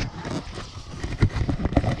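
Irregular, closely spaced thumps and scuffling as hands grab at a slippery burbot flopping on the snow-covered ice, the fish slipping free of the grip.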